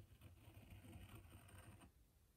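Faint scraping of a pen-style craft knife blade scoring through a paper sticker sheet in one steady stroke that stops just before the end.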